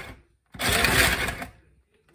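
Electric ice shaver grinding ice cubes, its motor running in short bursts: one cuts off at the very start, and another starts about half a second in and runs for about a second before stopping.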